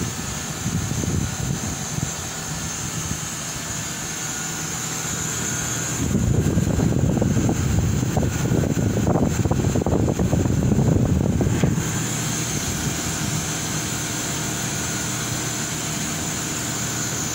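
Midea MDV DC inverter multi-zone outdoor condensing unit running steadily, its compressor and condenser fan making a constant hum with a high hiss above it. From about six to twelve seconds in, a louder rush of fan air takes over.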